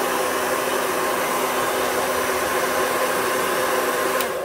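Remington hand-held hair dryer running steadily, its motor blowing a constant rush of air with a steady low hum underneath.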